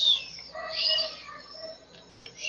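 A few short, high chirps, bird-like, in the first second, then fainter sounds.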